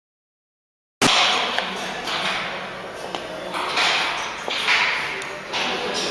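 Silent for the first second, then a horizontal flow-pack bread wrapping machine runs. Its noise swells and fades in a repeating cycle about once a second, with light mechanical clicks.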